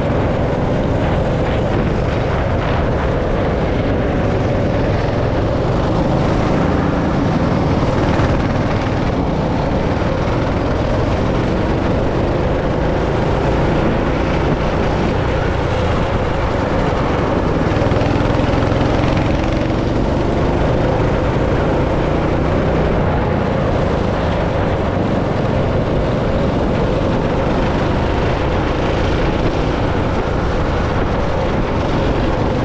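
Go-kart's small petrol engine running at speed, its note rising and falling with the throttle through the corners.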